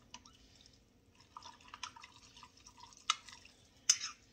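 A metal spoon stirring a wet corn salad in a glass jar: faint, wet, irregular clicks and scrapes, with two sharper clicks near the end.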